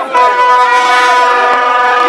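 Horns sounding one long, steady, loud blast together, with crowd voices faintly beneath.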